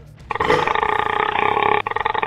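A man's long, loud belch that starts suddenly about a third of a second in and holds on without a break.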